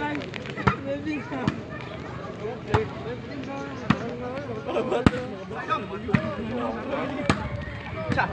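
A volleyball being struck back and forth in a rally: about seven sharp smacks roughly a second apart, the loudest about five seconds in, over crowd voices.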